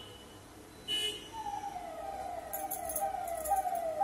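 A siren sounding in repeated falling sweeps, about two to three a second, starting a little over a second in and growing louder. Just before it there is a short horn toot.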